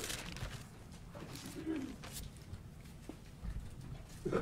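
Thin Bible pages rustling faintly as they are turned by hand, with a brief low hum about halfway through.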